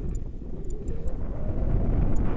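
Wind buffeting the camera's microphone in paraglider flight: a low rush of air that eases a little early on and builds again toward the end.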